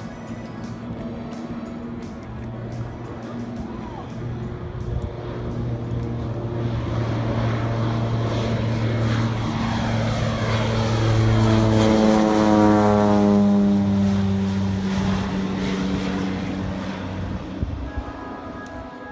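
A single-engine floatplane taking off from a lake and flying low past: its engine and propeller grow steadily louder to a peak about twelve seconds in, then the pitch falls away as it passes overhead.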